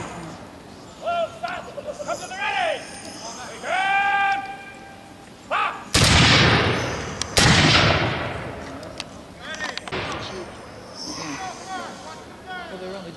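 Two black-powder musket shots, blank charges, about a second and a half apart, each with a long echoing tail. Before them come short shouted commands and yells.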